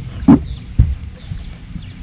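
Two loud thumps about half a second apart over a steady low rumble.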